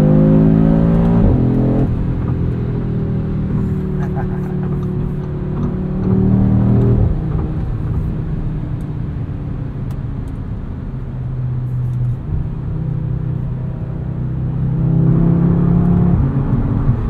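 2022 Audi RS 3's 2.5-litre turbocharged inline five-cylinder heard inside the cabin at highway speed. The note climbs gently, drops suddenly about two seconds in and again around seven seconds, then runs steadily with road noise before swelling again near the end.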